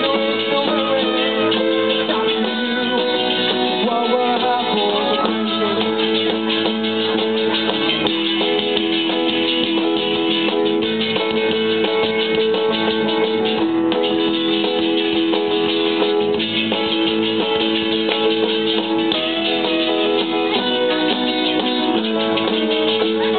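Live rock band playing an instrumental passage with no vocals: electric guitars, keyboard and drums, with held notes sustained over the band. The sound is loud and a little muffled, with no high treble.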